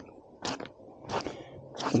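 Gloved hand brushing sawdust across the face of a freshly sawn board: three short scraping swishes, roughly two-thirds of a second apart.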